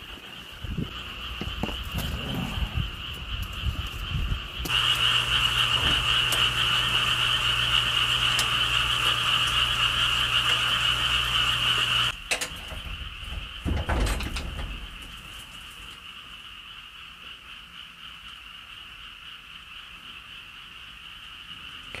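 Steady night chorus of frogs. It becomes much louder about five seconds in, with a low hum under it, then drops suddenly about twelve seconds in and carries on faintly. A few dull thuds come around fourteen seconds in.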